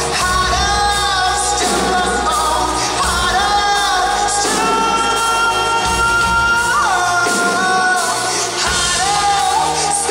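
Live pop-rock band performance: a male lead vocal sung into a handheld microphone over keyboard and drums. He holds one long note through the middle, and it slides down about seven seconds in.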